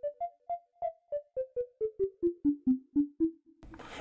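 Serum software synth 'Bass Plucks' patch playing a run of about fourteen short plucked notes, roughly four a second, mostly stepping down in pitch. Each note has a quick, mallet-like attack and a fast decay.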